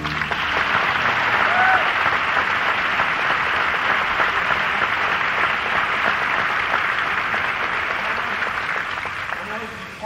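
A theatre audience applauding at the end of a song in a live musical. The applause is steady and dies away toward the end.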